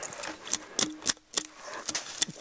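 A quick, irregular run of sharp snaps and cracks as limbs and twigs are cleared off a spruce trunk.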